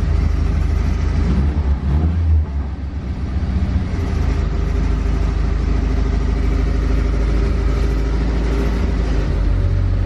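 1975 Mini Clubman estate's A-series four-cylinder engine running, heard from inside the car, just caught after a long struggle to start: the revs rise and fall unevenly over the first couple of seconds, then it settles into a steady idle.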